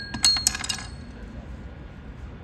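Mallets striking the bars of a tabletop sonic sculpture: a quick cluster of bright, clinking strikes in the first second, leaving high ringing tones that fade away.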